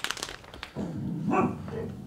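A Chihuahua shaking itself off, a fast flapping rattle at the start. It is followed about a second in by a brief low vocal sound from the dog.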